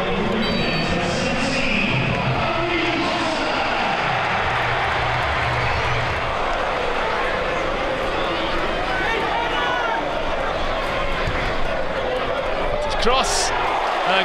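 Football stadium crowd: a steady din of many voices, with fans' singing rising and falling through it, and a couple of sharp knocks near the end.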